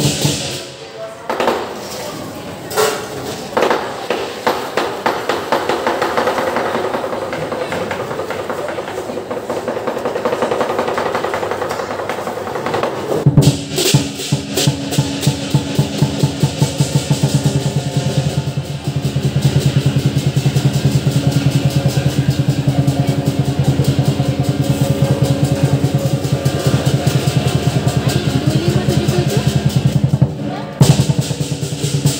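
Lion dance percussion band: a big drum with clashing cymbals and gong playing a fast, driving beat. There is a brief break about thirteen seconds in, then the beat comes back denser and louder.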